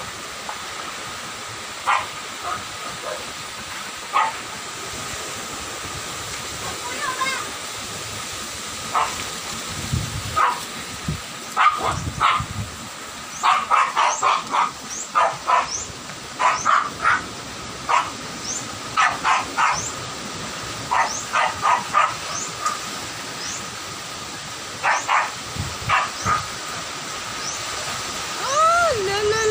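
Steady noise of strong storm wind and rain, with a dog barking in repeated short bursts, several barks at a time, through the middle and later part.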